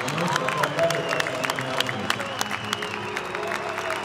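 Music playing over an arena sound system, with scattered clapping from the crowd.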